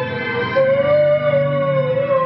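A man singing one long, high, wailing note in a mock-operatic voice. The pitch slides up slightly about half a second in and then holds steady.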